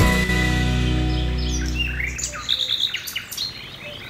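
The held final chord of a short music sting fades out over the first two seconds or so. A run of quick, high bird chirps follows and carries on to the end.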